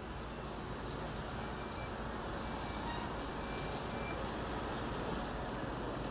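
Road traffic noise: car and motorbike engines and tyres in a steady wash that grows slightly louder.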